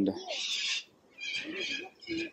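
A man's voice, speaking quietly with a soft hissing sound in it.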